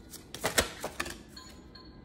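A handful of light, sharp clicks and taps of tarot cards being handled as the next card is drawn, over faint background music.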